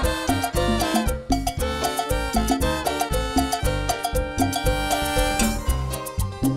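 Live band playing an instrumental break of Latin dance music: a melody line in short repeated notes over a steady bass and percussion beat, with no singing.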